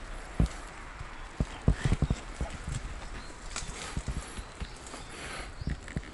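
Irregular short knocks and bumps from a wheelchair rolling and turning over an uneven path, with a quick cluster of them about two seconds in and more near four seconds.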